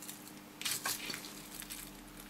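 Faint rustling and crinkling of a thin strip of metallized polyester capacitor film handled between fingers, with a couple of brief rustles a little before one second in, over a faint steady hum.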